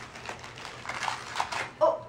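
Wrapping paper rustling and tearing as gifts are unwrapped, in quick faint crinkles. Near the end comes a short high whine.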